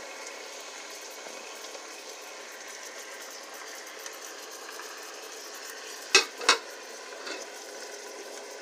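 Chicken pieces sizzling in a pot with their soy marinade just poured in, a steady hiss. Two sharp knocks about six seconds in, a moment apart.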